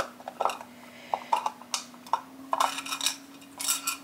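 Scattered light clicks and clinks of hard plastic removable veneers being handled and fitted over the teeth, over a faint steady hum.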